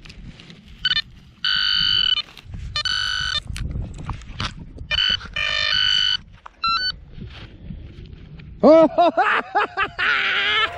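Minelab Manticore metal detector sounding a buried target as the coil passes over the hole: several short, steady beeps, each starting and cutting off abruptly, signalling metal reading ID 84. Near the end a man gives a short laugh.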